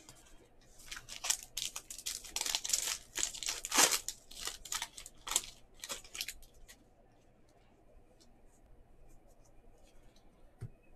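A trading card pack's wrapper being torn open and crinkled: a run of crackling rips from about a second in until about six seconds, loudest near the middle. Then only a few faint clicks as the cards are handled.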